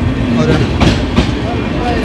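Passenger train moving fast along the platform: a continuous rumble with a few sharp clacks of the wheels.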